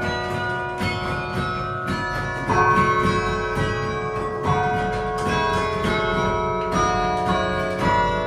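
Carillon bells playing a melody: struck bell notes every half-second or so, each ringing on and overlapping the next, with fuller strikes about two and a half and four and a half seconds in.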